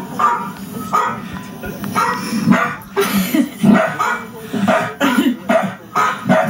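A dog barking in a quick series of short barks, about two a second.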